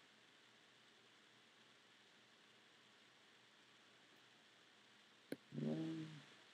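Near silence: faint room tone, with one sharp computer mouse click about five seconds in.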